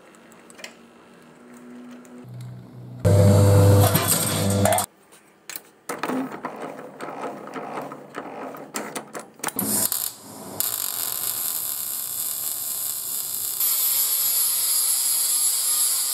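Workshop metalworking sounds in short cuts: a loud machine hum with a steady pitch about three seconds in, then the uneven noise of a slip roll rolling sheet steel. After that comes an angle grinder grinding steel, a loud steady hiss with a high whine through the last five seconds or so.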